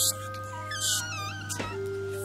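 Eerie ambient film score: sustained droning notes under wavering, wailing glides in pitch, with short bursts of hiss at the start and again about a second in.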